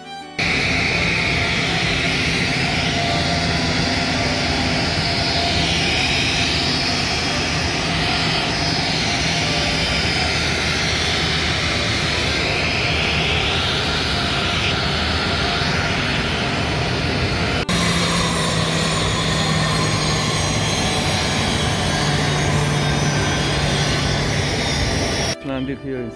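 Aircraft engine noise on an airport ramp: a loud, steady rush with a low hum beneath it. The sound changes abruptly about 18 seconds in, where the low hum becomes steadier.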